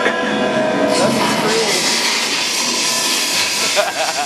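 Tower of Terror ride soundscape: a steady whooshing rush of noise that swells about a second in and holds, with a voice briefly beneath it early on.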